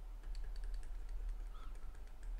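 Light, irregular clicks of a stylus tapping on a drawing tablet as short dashes are drawn, over a low steady electrical hum.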